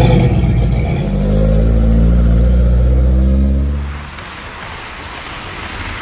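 A 1960s Chevrolet Chevy II Nova's engine running with a steady low rumble that dies away about four seconds in. It is followed by a quieter, steady hiss.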